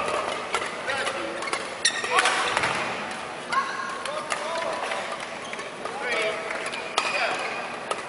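Reverberant indoor sports-hall sound of a badminton match: short raised voices and calls, with a few sharp knocks of shuttle or racket.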